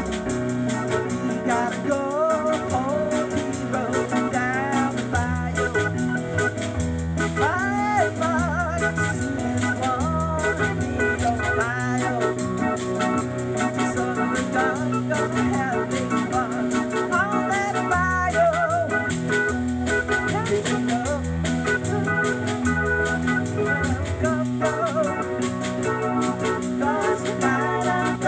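Live trio of two electronic keyboards and a small drum kit playing an upbeat song. An organ-voiced keyboard carries the melody over a keyboard bass line and drums, with no words sung.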